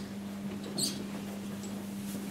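A short high-pitched squeak just under a second in, over a steady low hum in the room.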